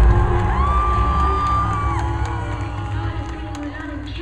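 Live rock band music with a crowd cheering and shouting, fading down steadily; the heavy bass drops away early on and one long held shout rises over the noise.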